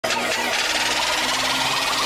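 Electronic logo-intro sound effect: a steady, rapidly pulsing buzz that starts abruptly.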